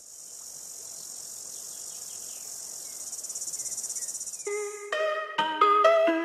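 Insects buzzing steadily and high-pitched, with a faster pulsing for about a second past the middle. Light music with plucked or struck notes comes in near the end.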